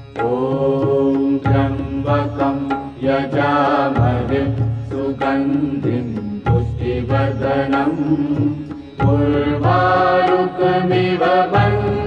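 Hindu devotional music: voices chanting a mantra over instrumental accompaniment, with a deep beat about every two and a half seconds.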